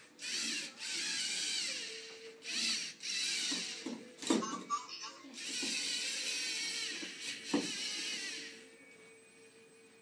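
LEGO Mindstorms NXT robot's servo motors whirring in several bursts as the robot drives and turns, a high, wavering gear whine that starts and stops. Two sharp knocks come about four seconds in and again near seven and a half seconds.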